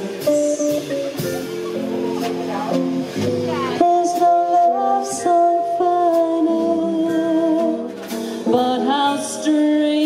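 Live swing band playing a slow jazz ballad: a woman singing in an alto voice, holding long notes with vibrato, over archtop electric guitar and a drum kit with light cymbal strokes.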